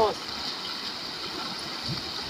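A fast mountain river rushing steadily over rocks and rapids.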